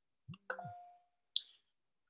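Faint clicks with a short ringing tone: a soft low sound, then a click whose ring fades over about half a second, and a sharper, higher click a little over a second in.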